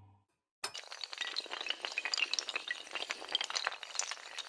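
Sound effect of many small hard tiles clattering and clinking as they tumble, a dense glassy rattle. It starts suddenly just over half a second in and keeps going.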